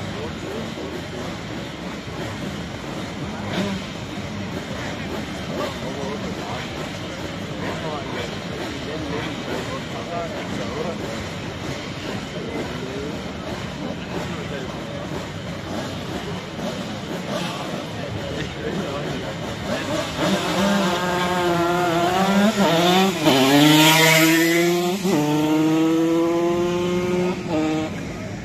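Crowd babble, then from about two-thirds of the way in a Simson two-stroke moped engine accelerating hard. Its pitch climbs and falls back at each of two gear changes, and it is loudest as it passes close.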